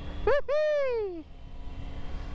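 A high voice-like call, a short rise and then a long falling glide lasting under a second, over the low, steady running of a Triumph Tiger motorcycle engine on the move.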